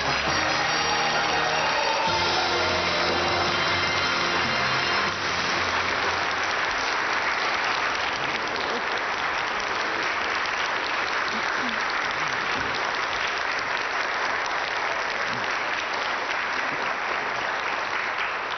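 Studio audience applauding steadily, with music playing over it for the first five seconds or so.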